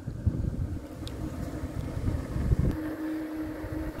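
Wind buffeting the microphone of a camera moving along a road, an uneven low rumble. A faint steady hum joins about two-thirds of the way through.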